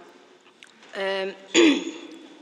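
A person clears their throat once, about one and a half seconds in; it is the loudest sound here, just after a short voiced hesitation.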